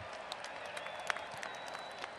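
Stadium crowd applauding, heard faintly, with scattered sharp claps standing out and a thin high whistle in the second half.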